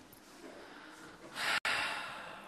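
A person's sharp, noisy breath through the nose, loud and brief, about a second and a half in, split by a momentary dropout in the audio; faint room tone before it.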